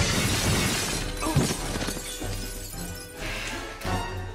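A glass window shattering as a body crashes through it: a dense spray of breaking glass right at the start that thins out over the next second or so. Background music runs underneath.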